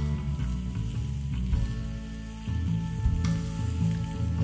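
A steak sizzling in a skillet on a grill grate over a wood fire, with background music and a sharp crack about three seconds in.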